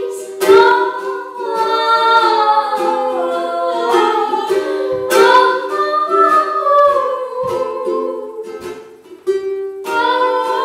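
A woman singing while strumming a ukulele, with a brief pause in the sound near the end before she carries on.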